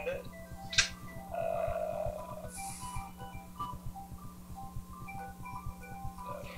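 Quiet electronic music from a FoxDot (Python and SuperCollider) live-coding session: short synthesized notes in a sparse melodic pattern over a steady low hum and a fast, even low pulse.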